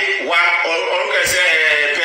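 A man's voice singing or chanting in drawn-out phrases, with long held notes that glide between pitches.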